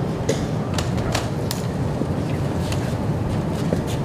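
Steady low rumble of open-air background noise on the microphone, with a few light knocks and clicks in the first second and a half.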